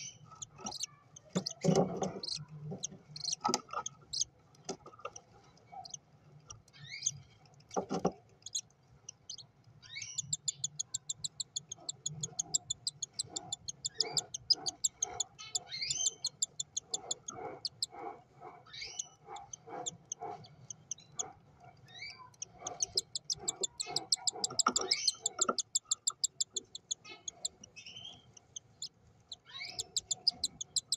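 Cockatiel chick, about five days old, giving rapid trains of high begging cheeps as the parent bends over to feed it, mixed with lower pulsing calls a few times a second. There are a few scattered chirps and short knocks among them.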